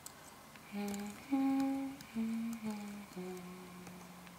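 A voice humming a slow, wordless melody of held notes that steps downward and ends on a long, low note.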